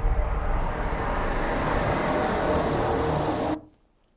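A sound-design effect: a deep rumble under a noisy rush that grows brighter and hissier, then cuts off suddenly near the end.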